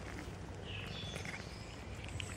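Cats chewing and smacking wet cat food from a plastic tub, a run of faint small clicks. A brief high chirp sounds about a second in.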